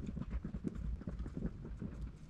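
A pen writing on a page in a ring binder lying on a table: soft, irregular taps and knocks.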